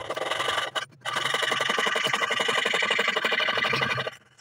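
Jeweller's piercing saw cutting into a thin metal ring strip: quick, even back-and-forth rasping strokes, with a brief pause about a second in before sawing resumes.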